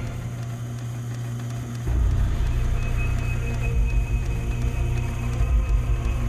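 Background soundtrack music: a low sustained drone, with a deeper, louder bass layer coming in about two seconds in.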